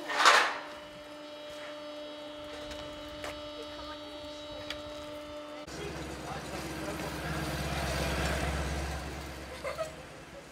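A short loud burst of noise, then a steady machine hum holding several fixed tones. Partway through, this gives way to a low engine rumble that swells and dies away.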